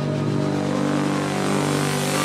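Progressive psytrance build-up: a sustained synth chord under a rising, brightening noise sweep, with no kick drum or bass.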